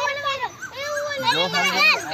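Children talking in high-pitched voices, with a lower voice joining in over the second half.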